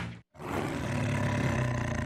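A tiger's roar, played as a sound effect, comes in right after a brief silent break and runs on as a rough, sustained growl for about two seconds.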